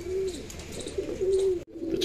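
Domestic pigeons cooing, a few low coos one after another; the sound cuts off abruptly near the end.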